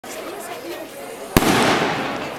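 A single sharp firework bang about one and a half seconds in, echoing and fading over the next second, over a crowd's murmur.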